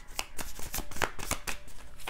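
Tarot deck being shuffled by hand: a quick, irregular run of soft card clicks and slaps, about four or five a second.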